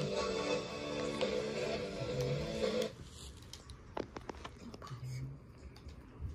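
Music playing from a television, cutting off suddenly about three seconds in, followed by a few light clicks and taps.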